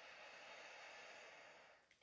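A faint, slow breath out, a soft airy hiss that fades away shortly before the end.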